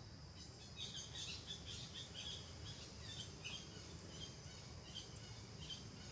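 Faint forest ambience: a steady high insect drone with a quick series of short bird chirps starting about half a second in and stopping near the end, over a low background rumble.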